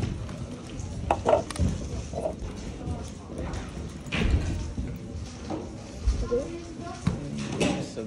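Rubik's Clock being handled and solved at speed: quick plastic clicks of its pins and turning dials, in groups with brief knocks of the puzzle and hands on a stackmat timer, over background voices in a hall.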